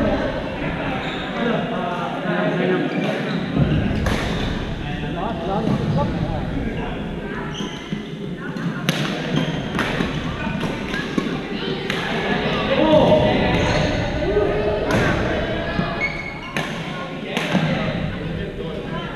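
Badminton rackets striking a shuttlecock in a doubles rally: sharp pops every second or so, echoing in a large gymnasium over indistinct chatter from players on the surrounding courts.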